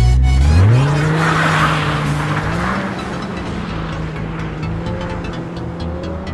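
Mercedes-Benz CLS engine revving up sharply over the first second, then held at steady high revs as the car slides on snow, with a hiss from the tyres a second or two in. Music plays along.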